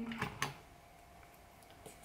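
A short closed-mouth hum on one steady note stops just after the start, followed by two light plastic clicks about a quarter second apart as a brow gel tube is opened. After that there is only faint room tone.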